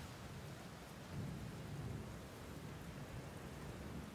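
A low, steady rumble that swells a little about a second in.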